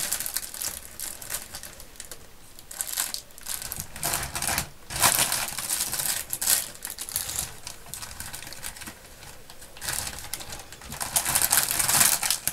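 Clear plastic bag crinkling and rustling as it is handled, in irregular bursts, loudest about halfway through and again near the end.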